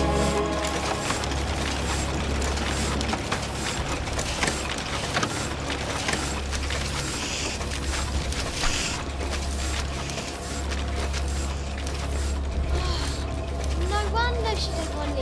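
Old printing press running: a dense, continuous mechanical clatter of its levers and rollers over a steady low drone.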